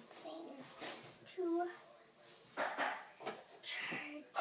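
A girl's voice making a few short unworded vocal sounds, mixed with rustling and movement noise close to the microphone.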